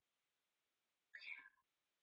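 Near silence: room tone, with one faint, brief sound a little past a second in.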